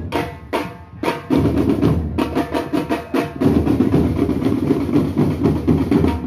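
Marching band drumline playing, with snare drums and bass drums in a fast, dense cadence. The drumming thins to a brief lull at the start and comes back in full about a second in.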